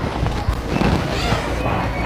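Indistinct voices mixed with music, with no single clear sound standing out.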